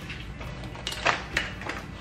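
A few soft clicks and rustles of sheets of cardstock being picked up and handled on a tabletop, grouped about a second in.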